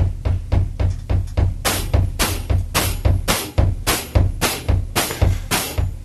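Drum kit playing the train beat: a steady stream of snare strokes over the bass drum, which hits on every downbeat and upbeat (four to the bar), with the hi-hat on the upbeats. About two seconds in, brighter accented strokes come in on a regular pulse.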